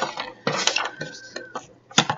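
Pages of a ring binder being turned by hand: paper rustling and sliding, with light metallic clinks from the binder's rings and a brief ringing tone about a second in.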